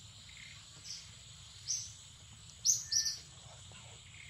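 A few short, high bird chirps, the loudest two close together about three seconds in, over a steady thin high insect whine.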